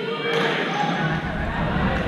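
Busy badminton-hall noise: players' voices from several courts mixed with the thuds of footwork and shuttlecocks being hit.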